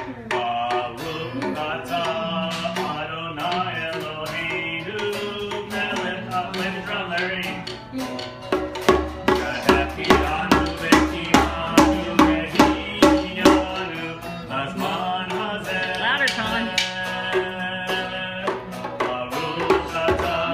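Ukulele strummed to accompany voices singing a song. For several seconds in the middle a strong beat comes about twice a second.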